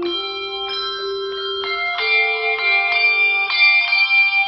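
A handbell choir playing: chords of handbells struck every half second or so, each note ringing on and overlapping the next.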